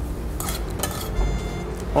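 A few sharp clinks of a metal spoon against a stainless steel bowl in the first second, followed by a faint metallic ring, over a steady low hum.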